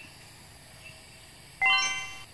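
Quiet outdoor background, then about one and a half seconds in a bright chime sound effect. It is a quick rising run of bell-like notes that rings on and fades.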